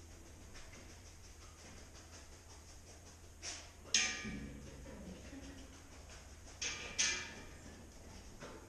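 Sharp knocks with a short ring, in two pairs: one about three and a half seconds in and one near seven seconds, each a lighter knock followed by a louder one. Under them runs a faint steady low hum.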